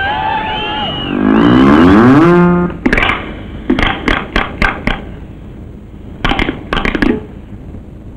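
Elephant trumpeting, one loud call falling in pitch. It is followed by a run of sharp cracks in two groups, about five and then four, a few tenths of a second apart.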